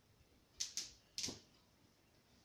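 A duvet being handled while making a bed: three short, sharp sounds, two close together and a third about half a second later.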